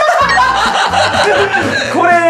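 People laughing, over background music.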